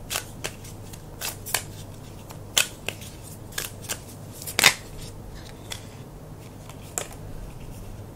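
A deck of tarot cards being shuffled by hand: irregular soft slaps and snaps of cards against each other, the loudest a little past halfway.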